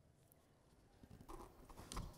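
Near silence, then from about a second in, faint small clicks and soft sounds of a person sipping water from a paper cup.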